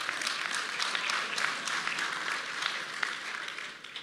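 Audience applauding, many hands clapping in a dense patter that eases slightly near the end.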